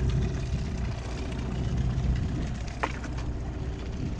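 A steady low mechanical hum, like an engine running, with one short high chirp about three seconds in.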